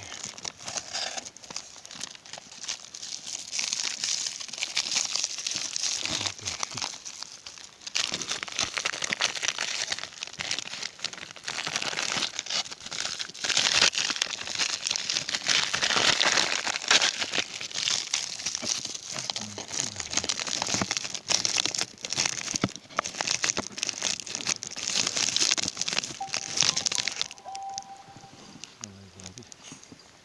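Camouflage jacket fabric rubbing against the phone's microphone: continuous scratchy rustling and crinkling that swells and eases and stops shortly before the end.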